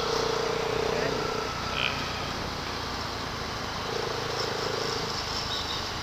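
Motorcycle riding in city traffic: steady engine and road noise, with a steady hum that fades about a second and a half in and comes back for about a second around four seconds in.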